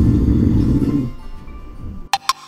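A comic snoring sound effect: one long, low snore that fades away after about a second, over quiet background music.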